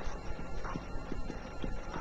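Marker writing on a whiteboard: a run of faint, irregular taps as the pen strokes hit the board.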